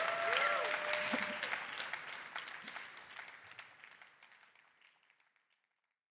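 Audience applauding, the clapping thinning and fading away to silence about five seconds in.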